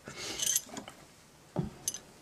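Handling of a cloth journal and fabric on a tabletop: a brief soft rustle, then a low thump about one and a half seconds in and a light click just before the end.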